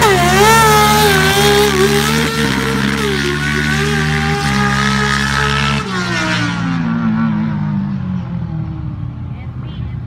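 Drag-racing ATV powered by a Kawasaki 636 Ninja inline-four engine, running hard at full throttle with brief dips in the note at gear changes. About six seconds in the engine is let off, and its falling note fades into the distance.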